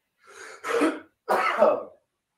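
A man coughing and clearing his throat: two coughs in quick succession, each lasting under a second.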